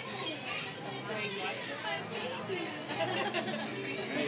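Several voices talking over one another: restaurant chatter, with no words standing out clearly.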